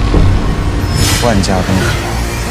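Drama trailer soundtrack: a heavy, low rumble of sound effects, with a swish about a second in and a short spoken line in Chinese just after it.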